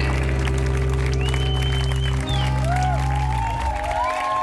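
A live band's last chord rings out on guitar and bass and fades away about three and a half seconds in. The audience starts clapping and cheering over it.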